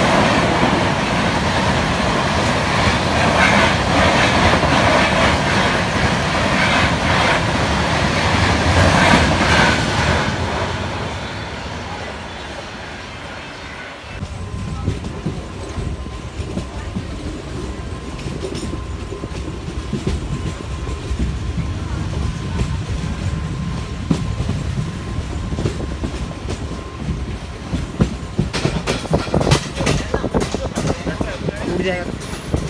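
Paschim Express LHB coaches rushing past close by, a loud dense rush of wheel and air noise that fades away about ten seconds in. From about fourteen seconds, a moving electric multiple-unit train heard from on board: a quieter steady run with wheel clatter over rail joints and a faint steady whine, the clacking growing denser near the end.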